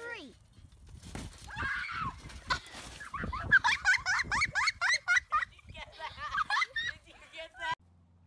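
Children on a trampoline: a few dull thumps of bodies landing on the mat, then high-pitched laughing and squealing in quick repeated rises and falls, cut off suddenly near the end.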